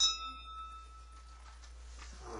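A single bright ding: something small and hard struck once, ringing with several clear tones that fade away over about a second and a half.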